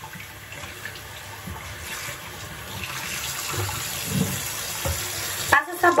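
Bathroom tap running into a sink in a steady rush while a face is being washed with soap, with a few faint low knocks.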